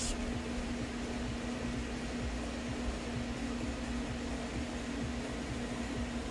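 Steady fan hum, a constant low tone over an even whir, with no other sound standing out.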